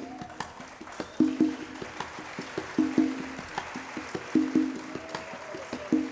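Jazz quartet playing live, led by a repeating percussion figure: pairs of ringing low drum tones about every one and a half seconds, with sharp taps between them and a soft cymbal wash above.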